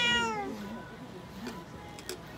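A tabby domestic cat gives one loud meow at the start, falling in pitch over about half a second.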